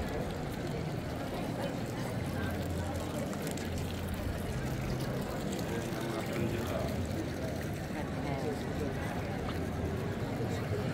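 Indistinct chatter of passers-by in a busy paved town square, over a steady low rumble.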